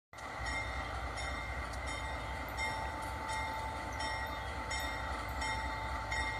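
Freight train led by two GE AC44i diesel-electric locomotives approaching slowly: a steady low engine rumble with a faint tick repeating about every 0.7 seconds.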